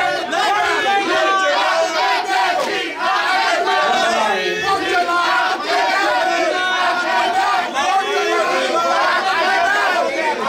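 A crowd yelling and cheering loudly, many voices over one another without a break.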